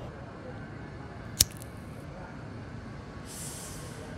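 A single sharp click about a second and a half in, then a short soft hiss near the end, over a steady faint background hiss.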